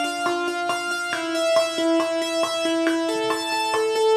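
Logic Pro arpeggiator playing a keyboard synth patch, an electric-piano-like tone, stepping up and down through a short melody over two octaves in even eighth notes, about four or five notes a second.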